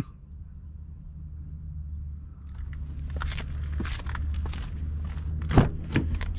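Footsteps and movement, with rustling handling noise over a low steady rumble of wind on the microphone; a string of short knocks builds up partway through and one sharp knock comes near the end.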